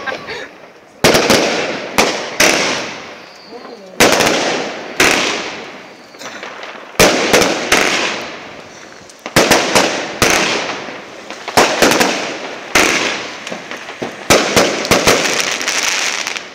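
Unbranded consumer firework cake firing its shots: a run of sharp bangs, often two or three in quick succession, with gaps of up to about two seconds between groups. Each bang is followed by a tail of crackling that fades over a second or two.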